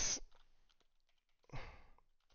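A man's breath let out into a close headset microphone: a short, sigh-like rush of air about a second and a half in, after the tail of a spoken word and a few faint keyboard clicks.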